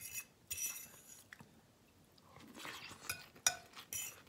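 Close-up crunching and chewing of a Chinese chicken salad with lettuce and almonds, in short crisp bursts. About three and a half seconds in, a utensil clinks sharply against the dish with a short ring.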